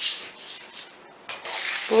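Card stock paper rustling and rubbing as hands fold it in half and smooth it flat against the table, heard twice with a quieter gap between.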